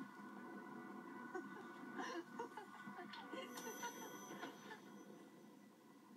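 Faint, soft background music with held tones playing from a television's speaker, heard across a small room, with a few brief wordless voice sounds mixed in.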